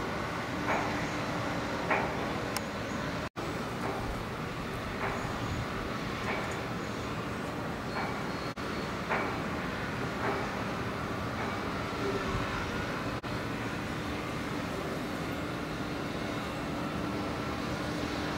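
Steady distant engine rumble with a faint steady hum and a few short sharp sounds over it; it cuts out briefly three times.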